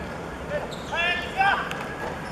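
Footballers shouting during play: two short, high-pitched calls about a second in, one after the other, with a sharp knock of the ball being kicked among them.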